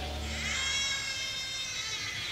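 A high, slightly wavering pitched tone with many overtones, held for about a second and a half during a lull in a live rock concert heard on an audience recording. A low drone fades out just as it begins.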